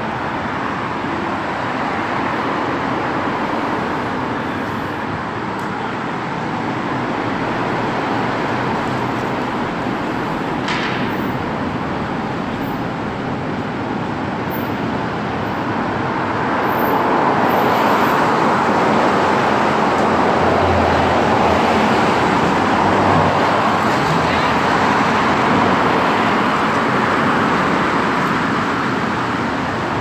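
Steady road traffic passing alongside: the continuous rush of car tyres and engines on a wet road, swelling louder about halfway through, with one brief click a third of the way in.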